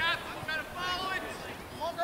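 Scattered, high-pitched voices calling out across an outdoor soccer field: short shouts from players and sideline, heard at a distance.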